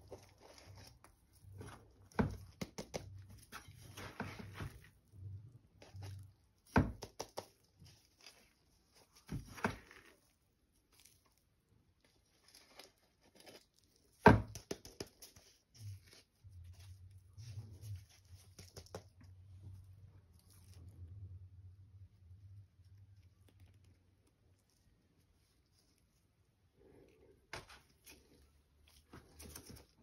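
Garden trowel scooping and scraping a dry potting mix of soil, rice husk, perlite and coco peat, the mix pattering and crumbling into a small plastic pot, with scattered knocks of trowel and pot against the tub; the loudest knock comes about halfway through.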